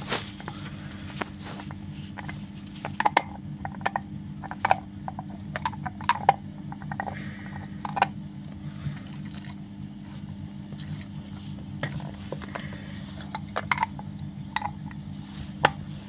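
Hotpoint Ariston front-loading washing machine with its drum at rest between cycles: a steady low hum with water gurgling and scattered drips and ticks, typical of the drain pump emptying the drum before the final spin.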